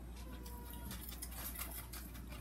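Faint crinkling and rustling of plastic wrap and cereal as hands press the cereal down into a yogurt layer in a wrap-lined pan, over a steady low hum.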